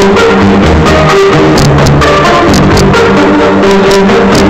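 Loud dance music from a DJ set over a club sound system: a steady beat with pulsing bass and sharp percussion hits, under held synth notes.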